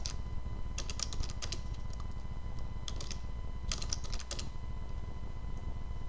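Computer keyboard being typed on in short flurries of rapid key clicks, three bursts in the first four and a half seconds, then it stops. A steady low hum runs underneath.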